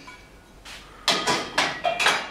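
Loose metal tools and parts clattering and clinking against each other and the bench as they are shifted by hand. A run of sharp knocks with a brief metallic ring starts about a second in.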